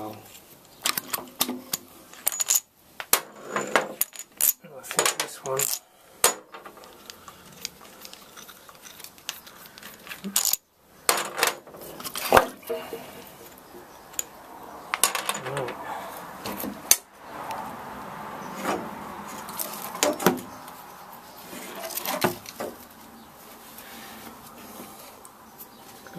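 Tools and rusty metal parts of a Copeland refrigeration compressor clinking and knocking as it is taken apart: a string of sharp metallic clicks and knocks in clusters, with short pauses.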